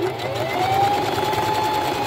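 Electric sewing machine stitching fabric: its motor winds up with a rising whine over about the first second, then runs at a steady speed.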